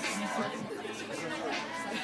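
People talking over background music.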